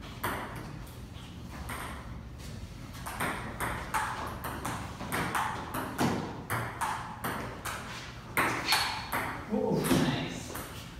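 Table tennis rally: the ping pong ball clicking off the paddles and bouncing on the table in quick hit-and-bounce pairs, the exchange picking up pace after a few seconds, with the sharpest hits near the end.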